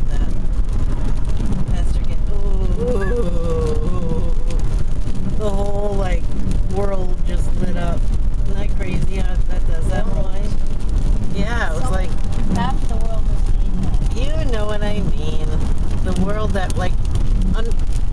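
Steady low road and engine rumble inside a moving car's cabin, with voices talking over it.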